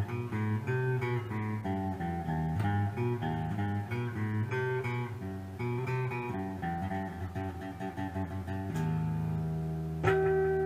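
Telecaster-style electric guitar played through an amp on the middle pickup position (both pickups on): a run of single-note lead licks and double-stops, settling about nine seconds in on a held chord that rings out.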